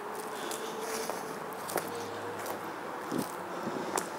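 Footsteps of a person walking over grass and sandy soil, with a few soft scuffs and clicks and a faint steady hum behind them.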